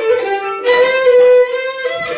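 Cretan folk music: a bowed string instrument plays a lively melody of short and held notes.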